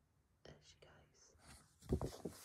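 A quiet pause in the reading: faint breaths and small mouth sounds from the reader, then a brief handling bump near the end.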